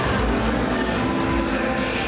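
Loud electronic dance music on a club sound system, with a heavy bass and held synth tones.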